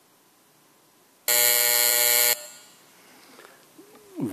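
The plenary's electronic buzzer sounds one steady, harsh tone for about a second, cutting off sharply. It signals the close of the electronic vote.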